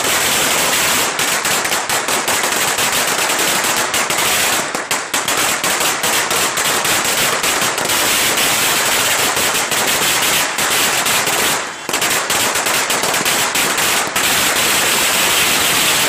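Firecrackers bursting on the ground in a rapid, almost unbroken run of loud bangs, with two brief lulls about five and twelve seconds in.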